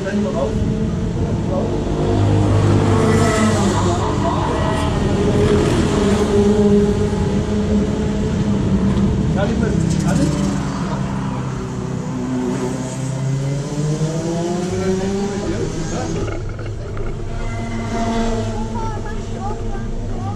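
Go-kart engine running steadily, its pitch sagging and rising again about two-thirds of the way through, with people talking over it.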